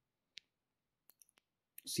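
A few faint clicks of a stylus tapping on a tablet screen while writing: one sharper click about a third of a second in, then three fainter ticks a little after a second in. Otherwise very quiet.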